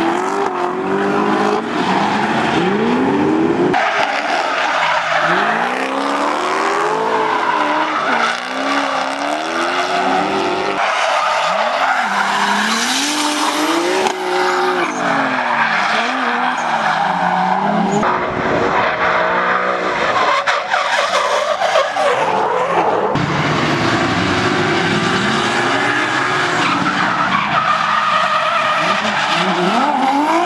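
Drift cars sliding sideways with their engines revving up and down and tyres screeching on the asphalt. The sound changes abruptly several times, jumping from one car's run to another.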